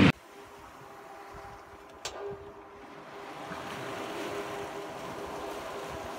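Sea water rushing and splashing along the hull of a sailboat under way, with some wind, growing louder after about three seconds. A faint steady hum runs underneath, and there is a single click about two seconds in.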